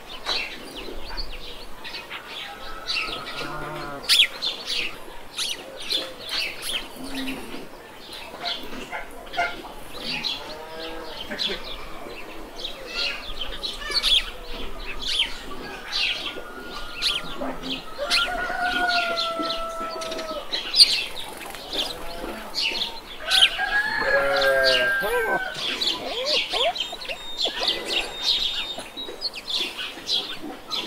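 Many small birds chirping steadily, with a few longer, wavering calls from chickens clucking, the loudest about two-thirds of the way through.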